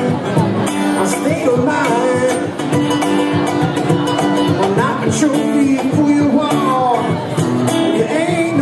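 Live acoustic music from two acoustic guitars playing together, a steady strummed rhythm with a melodic line moving over it.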